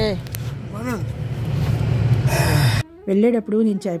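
Car idling, heard from inside the cabin as a steady low hum, with a short vocal sound about a second in. The hum cuts off suddenly near the end, and a woman's voice follows.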